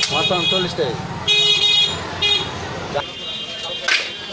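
A vehicle horn tooting twice in a busy street market, a longer blast then a short one, over people talking.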